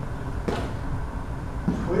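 Low, steady room rumble with a single short knock about half a second in and a softer one near the end.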